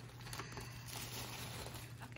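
Faint rustling and crinkling of an In-N-Out paper burger wrapper being pulled open by hand.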